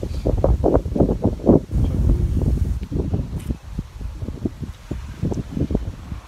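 Wind buffeting the microphone in irregular, rumbling gusts, strongest during the first two to three seconds and lighter afterwards.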